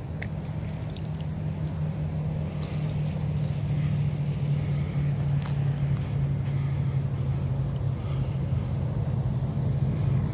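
Steady low rumble of distant freeway traffic, growing gradually louder.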